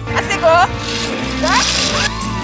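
A voice crying out twice, a short falling call about half a second in and rising calls near the end, over background music.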